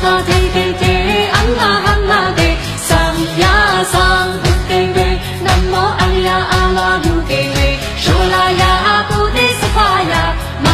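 A woman singing a pop song into a microphone over a backing track with a steady drum beat.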